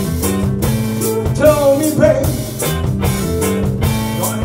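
A blues band playing live: drum kit with regular cymbal strokes, bass, guitars and keyboard, with a man singing over them.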